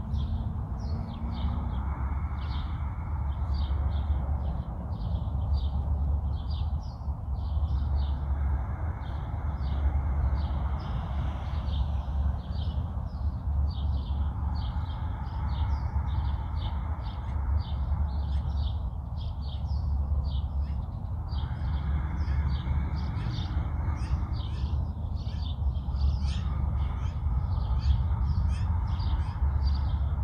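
Small birds chirping in a quick, continuous stream of short notes. Underneath is a low rumble of wind on the microphone that swells and fades every few seconds.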